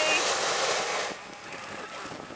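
Hot-air balloon propane burner firing with a steady roaring hiss, then shutting off abruptly about a second in.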